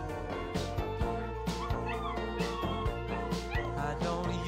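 Background music with a steady beat, over which a puppy whimpers and yips a few times while being bathed, once about halfway through and again near the end.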